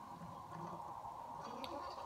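Faint handling sounds of a metal ATD extraction tool being pushed onto an anti-telescoping device at the end of a spiral-wound membrane element, with a couple of light clicks about one and a half seconds in. A steady low background hiss runs underneath.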